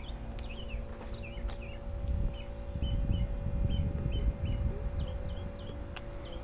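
Small birds chirping, short high calls repeated every half second or so. Under them sit a steady low hum and a low rumble that swells in the middle.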